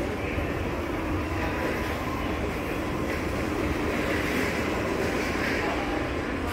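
Steady shopping-mall background noise: a constant low rumble and faint hum with no distinct sounds standing out.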